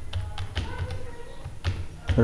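Computer keyboard being typed on: a handful of separate, irregularly spaced keystroke clicks as a word is typed.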